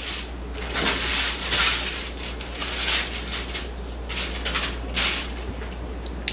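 Irregular crinkling and rustling of wrapping being handled in a run of short bursts, as chilled pie crust is unwrapped.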